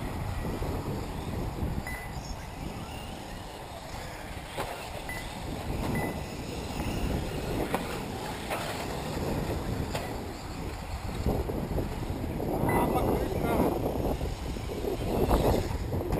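Wind buffeting the microphone, with indistinct voices rising near the end and a few short, faint high beeps.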